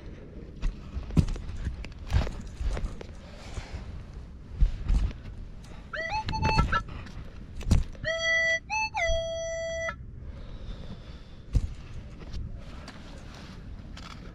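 Minelab CTX 3030 metal detector giving tone signals over a buried target, one about six seconds in and a longer pair from about eight to ten seconds, each sliding up briefly before holding steady. Between them come knocks of a spade cutting into the sandy soil to dig the target out.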